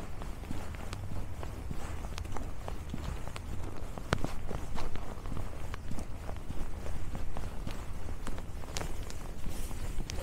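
Footsteps crunching on a packed-snow trail at a steady walking pace, over a low steady rumble.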